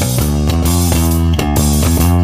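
Instrumental passage of an indie rock song: bass guitar and guitar playing a run of notes, with no singing.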